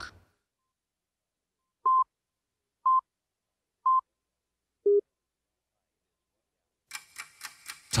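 Slate countdown tones: three short, identical high beeps a second apart, then one lower beep a second later, with silence between them.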